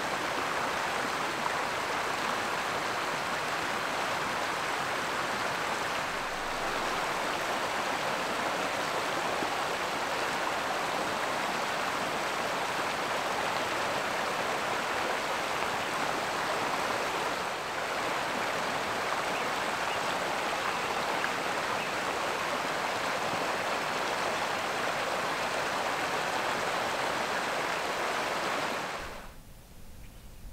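Steady rush of running water, like a creek, cutting off abruptly about a second before the end.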